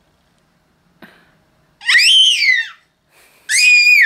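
A small dog giving two high-pitched whines, each rising and then falling in pitch, the second one shorter. A light click comes about a second in.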